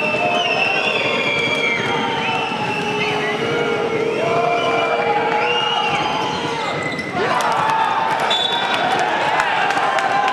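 Basketball arena noise: a crowd of fans shouting and cheering, with a voice talking over it. A ball is bouncing on the hardwood. Sharp knocks pick up about seven seconds in during the rebound scramble, and a short high whistle blast comes shortly after.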